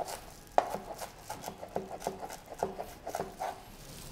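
Cleaver chopping leeks on a cutting board: a run of about ten quick knocks, two to three a second, each with a short ringing tail.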